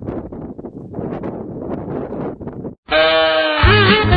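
Wind buffeting the microphone, broken off near the end by a brief gap; then loud, lively music starts.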